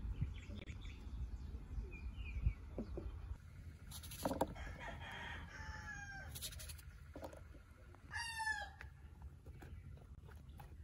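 A rooster crowing, with its loudest call about eight seconds in, over scattered soft knocks of a knife cutting eggplant on a clay plate.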